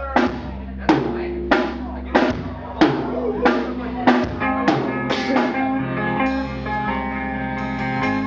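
Live rock band playing: about nine evenly spaced accented hits on drums and guitar, roughly every 0.6 seconds, each leaving ringing chords, then sustained held notes from about six seconds in.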